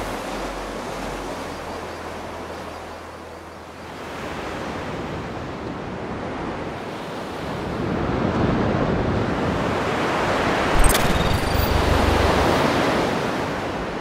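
Ocean surf washing in over rocks: a steady rush of waves that dips a few seconds in, then swells louder and holds. A single sharp click comes about eleven seconds in.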